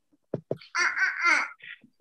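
A young child laughing, heard over a video-call line: two short bursts, then a longer high-pitched run of laughter.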